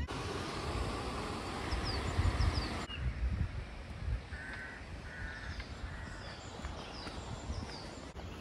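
Outdoor ambience by a canal: a steady hiss that cuts off about three seconds in, then a bird calling three times in quick succession, with faint chirps from small birds.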